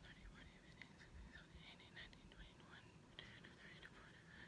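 A woman whispering numbers faintly under her breath as she counts.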